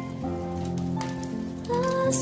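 Wood fire crackling with scattered sharp pops over soft music with sustained notes; the music swells with new notes near the end.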